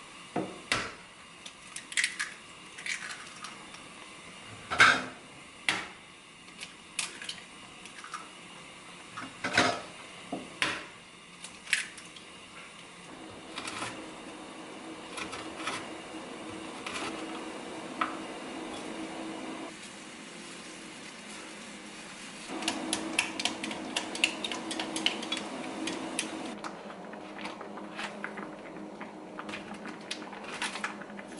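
Kitchen prep on a wooden cutting board. First come sharp, scattered clinks and knocks of eggs being cracked into a glass Pyrex measuring cup. Then a knife chops okra on the board over a steady low hum, and about two-thirds of the way in there is a quick run of rapid clinks as a fork beats the eggs in the glass cup.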